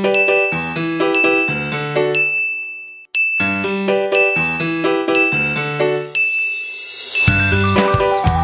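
Background music: a chiming, bell-like melody of short notes, breaking off for a moment about three seconds in, with a beat and bass coming in near the end.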